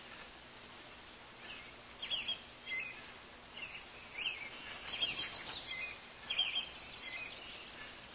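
Birds chirping: scattered short, high chirps over a faint steady outdoor hiss.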